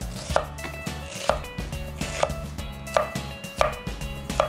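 Chef's knife slicing an onion into strips and knocking on a wooden cutting board: five evenly spaced cuts, under background music.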